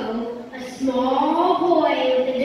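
A boy speaking into a handheld microphone, his voice drawn out in long, gliding phrases.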